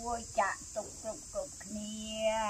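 Insects keep up a steady, high-pitched drone in the background while a person speaks.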